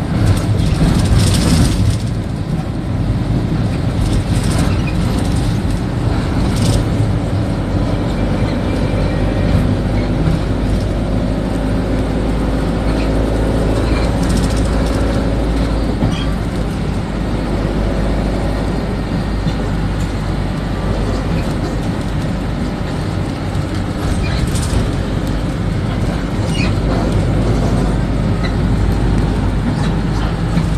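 Steady low rumble of engine and road noise from inside a moving bus, with a few brief clicks along the way.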